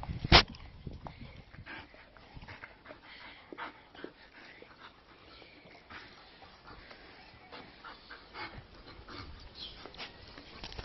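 A dog at play, rolling on its back and pawing at a hand on a gritty floor: scuffling and brief, faint dog noises, with one sharp knock about half a second in.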